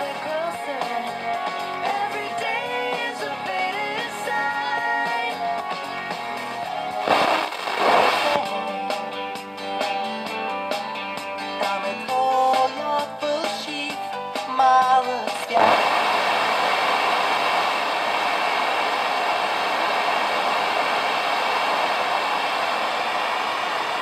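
FM broadcast stations playing music through the loudspeaker of a homemade TDA7088T FM receiver as it is tuned across the band with a varicap and multi-turn potentiometer. There is a short burst of hiss between stations about seven seconds in, and then a steady hiss of off-station noise from about two-thirds of the way through until it cuts off at the end.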